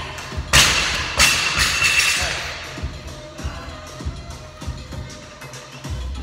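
A loaded barbell with rubber bumper plates dropped from overhead onto a rubber gym floor: one heavy thud about half a second in, then a few smaller bounces and rattles that die away. Music with a steady beat plays underneath.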